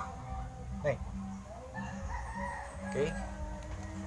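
A drawn-out bird call wavering up and down in pitch, starting about a second and a half in and lasting under two seconds, over a steady low hum.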